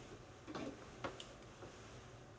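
A few faint short taps and clicks from handling while the hair is being arranged: a cluster about half a second in and two sharper clicks around a second in.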